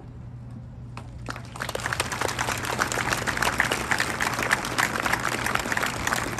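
An audience applauding: clapping starts about a second in, builds quickly, and holds steady.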